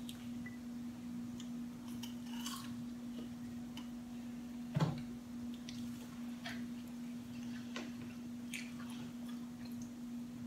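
Quiet eating at a table: faint scattered mouth clicks and small knocks of hands and food on plates and trays, with one louder knock about five seconds in, over a steady hum.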